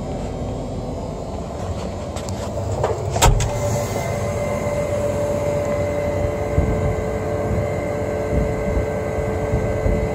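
Caterpillar 120M motor grader's diesel engine running steadily, heard from the operator's cab. There is a click about three seconds in, after which a steady hum rides on top of the rumble.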